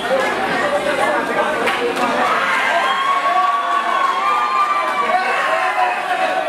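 Crowd cheering and shouting, with a few voices holding long yells from about halfway through.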